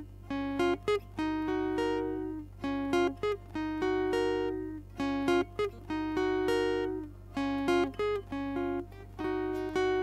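Guitar playing a short phrase of plucked, ringing notes, repeated over and over every couple of seconds, with a low steady hum underneath.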